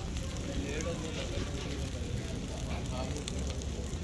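Low open fire burning under a bent steel truck axle to heat it for straightening: a steady rush with scattered small crackles.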